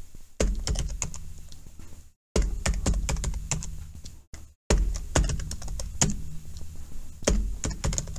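Typing on a computer keyboard: quick runs of key clicks in three bursts, separated by two brief pauses.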